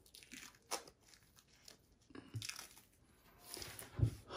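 Faint crackling and rustling of fingers rubbing at the skin and beard stubble around a fresh neck incision, a few short clicks spread through, with a soft rush of breath near the end.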